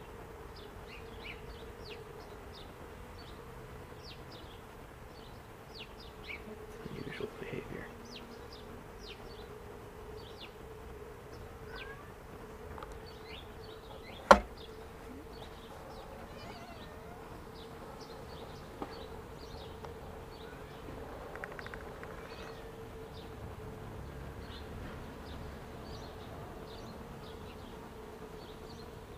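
A mass of honeybees buzzing in a steady, low hum as they crowd and crawl over an observation hive's entrance. One sharp click about halfway through stands out above the hum.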